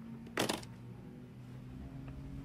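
A short click about half a second in as the briefcase is opened, followed by a faint steady low hum.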